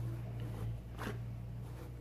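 A small paintbrush scratching briefly across bumpy, bubble-wrap-textured cured resin about a second in, over a steady low hum.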